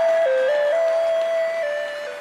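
Electronic keyboard playing a simple melody, one held note at a time stepping between a few pitches, with little bass or drums underneath.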